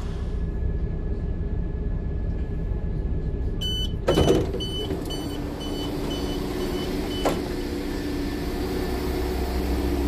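Class 172 Turbostar diesel multiple unit rumbling steadily, with its door warning sounding as a run of short high beeps for about four seconds, starting about three and a half seconds in. The sliding door opens with a thud just after the beeps begin.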